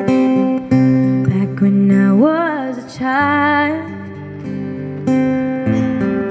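Acoustic guitar strumming and picking the chords of a slow ballad intro. Between about two and four seconds in, a female voice sings a wordless phrase with vibrato over the guitar.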